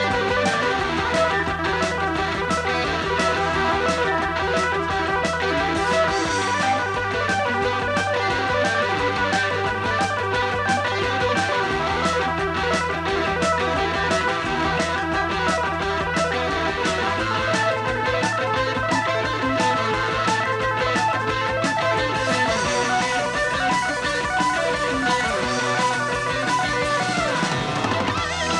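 Live rock band playing an instrumental passage: electric guitar over a steady drum beat and an electric bass that moves to a new note every few seconds, ending with a downward bass slide.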